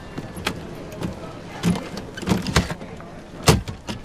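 Overhead luggage bins in an airliner cabin being opened and bags handled: a run of irregular clicks and knocks, the loudest about three and a half seconds in.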